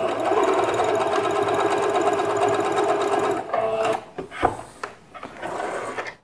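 Singer Patchwork electronic sewing machine running a straight test seam at a steady speed, to check the stitch balance after the bobbin-case tension was adjusted. It stops about three and a half seconds in, followed by a few short handling noises.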